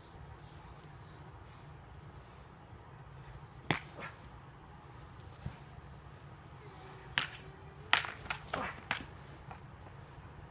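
Sharp clacks of training weapons striking: a loud one with a lighter follow-up about four seconds in, one faint hit in the middle, then a quick run of five or so between about seven and nine seconds.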